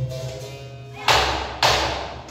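Capoeira rhythm on an atabaque, a tall hand drum: two sharp slaps about a second in, roughly half a second apart, as the ring of a deep stroke dies away.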